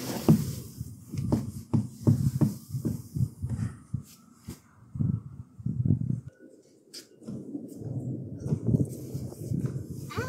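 Footsteps on a wooden deck, low thumps at about two a second, breaking off briefly around four seconds in and again after six.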